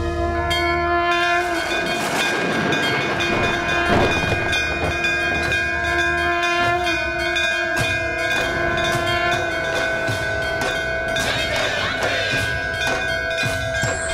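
Dramatic background score: long held notes in several pitches over fast, dense percussion strokes.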